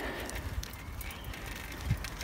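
Vintage Pashley tandem bicycle rolling along a tarmac road: a steady low rumble of tyres and moving air, with scattered light clicks and rattles.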